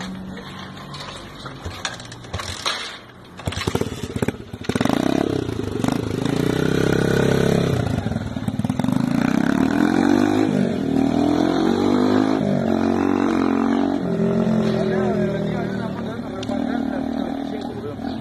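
Motomel X3M motorcycle's single-cylinder engine pulling away and accelerating, its pitch rising and falling again and again as it revs up through the gears. Before the bike gets going there are a few knocks and a lower running sound.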